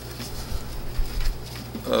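Meeting-room pause: a steady low electrical hum on the sound system, with a few soft low thuds about half a second and a second in. A voice starts just at the end.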